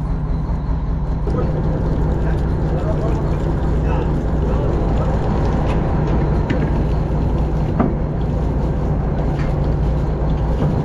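Fishing boat's engine running steadily, a low drone with a few faint knocks over it.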